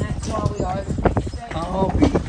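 Carriage horse's hooves clip-clopping on the street, with a voice talking over them.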